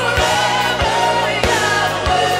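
Live worship song: a woman singing lead with backing voices over a band, with a bass line and a kick drum beating about every 0.6 seconds.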